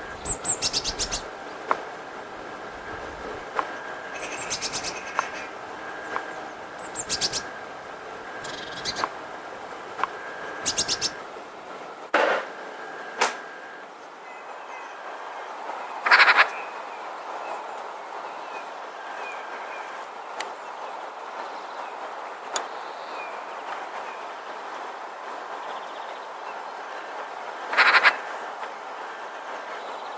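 Eurasian magpies chattering in short harsh rattles, five or so times in the first ten seconds. Later come faint high chirps and a few louder noisy bursts, the loudest about midway.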